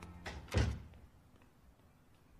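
Two short dull thuds about a third of a second apart, the second louder and deeper, then near silence.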